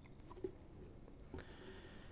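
Faint handling of a plastic bottle and a small stainless-steel tank: two light clicks, about half a second in and again a little before the end, over quiet room tone.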